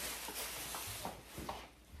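Quiet kitchen room tone with a few faint, brief knocks and handling noises about a second in.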